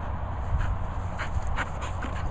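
Cocker spaniel panting close up: a run of short, quick breaths.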